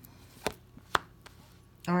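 Sharp clicks of an oracle card being drawn from the deck and laid down, two clear snaps about half a second apart and a fainter one after. A woman starts speaking near the end.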